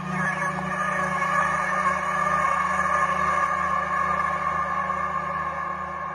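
Electronic music from a melodic techno mix: held synth tones with no beat, growing quieter from about four seconds in as the track fades out.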